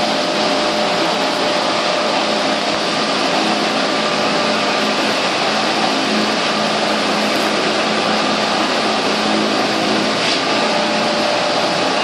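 Steady whirring hum of an electric motor running at a constant pitch and level, with no change.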